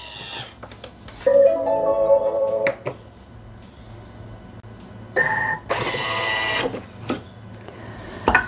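Thermomix TM6 food processor running: a steady whine with several pitches for about a second and a half, then, about five seconds in, a louder, noisier whir carrying a high steady tone for about a second and a half.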